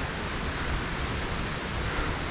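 Steady outdoor noise with uneven low rumbling, typical of wind buffeting the camera microphone.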